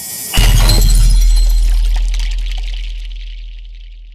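Cinematic transition sound effect: a short swelling whoosh, then a heavy hit about a third of a second in, with a deep sustained boom under a bright high shimmer that slowly fades away over the following seconds.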